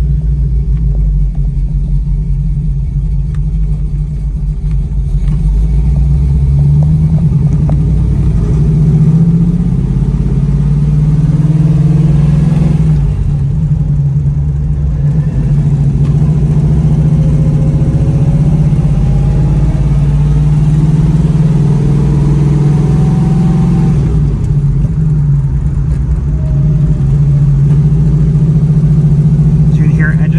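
1970 Dodge Challenger R/T's V8 engine heard from inside the cabin while driving, running loud and steady under load. The engine note breaks and changes pitch twice, about twelve seconds in and again about twenty-four seconds in.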